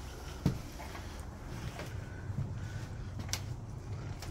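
Footsteps and a few short knocks on old wooden floorboards, the sharpest knock about half a second in, over a low rumble of movement.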